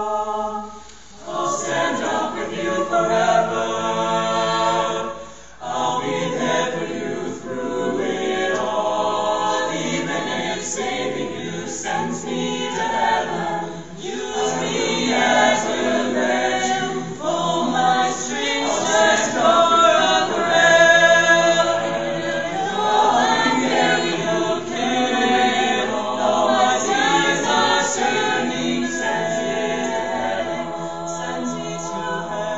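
Mixed-voice a cappella group of men and women singing in harmony with no instruments, with two short breaks in the first six seconds.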